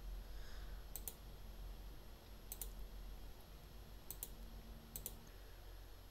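Faint clicks of a computer mouse button: four quick double clicks spaced about a second apart, over a faint low hum.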